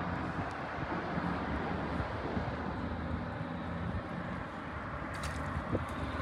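Steady low engine drone of distant heavy machinery or traffic, heard over an even hiss of wind and moving river water.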